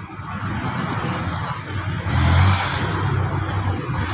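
Street traffic: a car's engine and tyres rumbling, swelling to its loudest about two seconds in as a vehicle passes close by.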